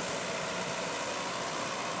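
Farm tractor engine running steadily while it tows a beach-cleaning sifter that gathers sargassum seaweed from the sand, heard with a steady hiss of background noise.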